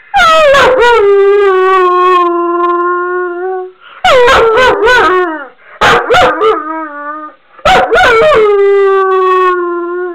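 A Weimaraner howling: three long howls, each sliding down in pitch and then held. The middle howl breaks up into short yips.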